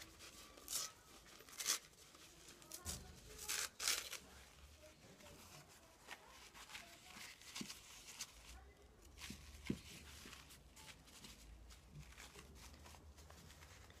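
Paper napkin torn by hand: a few short, sharp rips in the first four seconds, then fainter rustling and handling of the paper as it is pressed into a plastic box.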